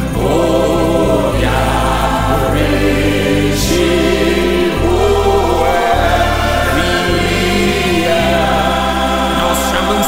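Gospel worship song: a choir singing over instrumental backing, with a bass line moving beneath.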